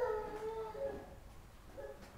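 A domestic animal's drawn-out, steady-pitched whining cry in the first second, followed by a short one, then fading away.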